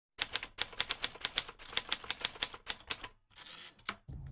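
A quick, uneven run of sharp mechanical clicks, about seven a second, like keys being struck, breaking off near the end for a brief hiss and one last click.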